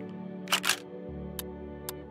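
Background music with a quick double-click sound effect about half a second in, as the next quiz question comes up. From about a second and a half in, a quiz countdown timer starts ticking, about two ticks a second, over the music.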